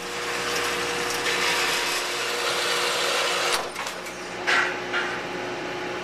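Horizontal metal-cutting bandsaw running and cutting through an iron railing bar, a steady hiss over the motor's hum. About three and a half seconds in the cutting noise drops away, leaving the saw's steady hum.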